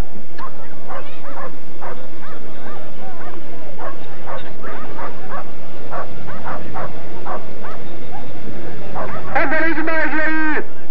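Greyhounds barking and yelping in many short, overlapping calls, with people's voices mixed in.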